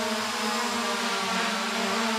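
SJRC F11S Pro 4K quadcopter drone hovering, its motors and propellers giving a steady whirring hum with a hiss over it, the pitch holding level.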